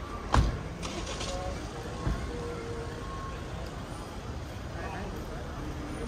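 Street ambience: a steady traffic rumble with scattered voices of passers-by. A sharp knock about half a second in, and a softer thud around two seconds.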